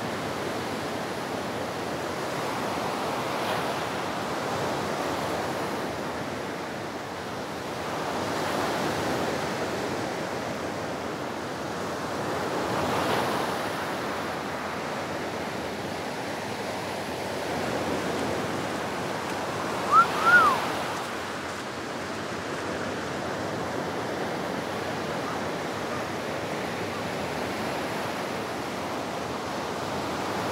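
Ocean surf breaking on a sandy beach: a steady wash that swells and eases every four or five seconds as waves come in. Two brief high chirps sound about two-thirds of the way through.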